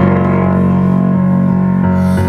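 Yamaha digital piano playing slow, sustained chords, with a change of chord near the end.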